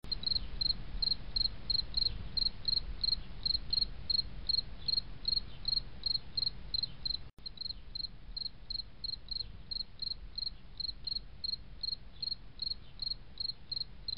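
A cricket chirping steadily, about three short high chirps a second, over a low rumble, with a brief dropout about seven seconds in.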